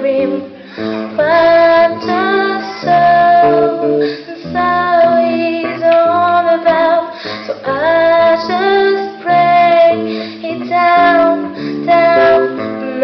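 A young female singer singing a song live into a microphone, in phrases with slides up into some notes, backed by a band with guitar.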